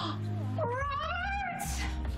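A woman's long, high-pitched squeal of delighted surprise, rising and bending in pitch, over soft background music.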